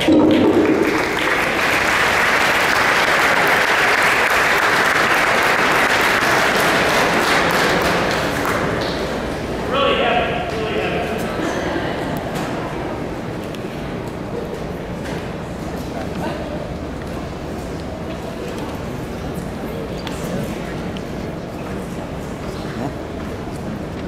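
Audience applauding in a large hall for about eight seconds, then fading into a murmur of crowd chatter.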